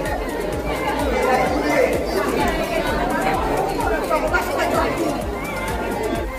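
Background music with a steady beat laid over the chatter of a crowd of people talking at once.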